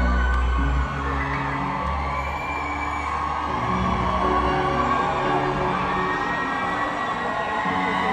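Live concert music in an arena: a slow instrumental passage of held keyboard chords, with a deep bass note that stops about a second in, under crowd noise and whooping.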